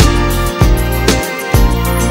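Instrumental passage of a song with no singing: a steady drum beat, about two hits a second, over a sustained bass line and other instruments.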